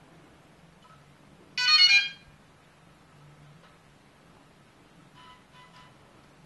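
DJI Inspire 1 drone powering on: a short, loud electronic startup jingle of a few pitched notes, followed near the end by a few faint short beeps.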